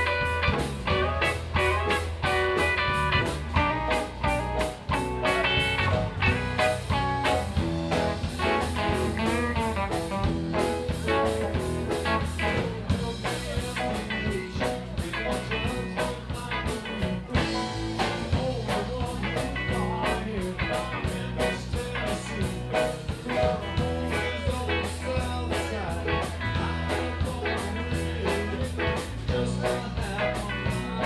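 Live band playing a blues-rock song: electric guitar and keyboard over bass and drum kit, with a steady beat.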